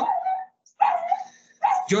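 A small dog barking in a few short, high yips.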